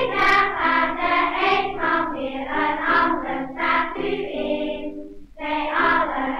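Children's choir singing a Dutch song, heard from a circa-1930 78 rpm shellac record, with a brief break in the singing about five seconds in.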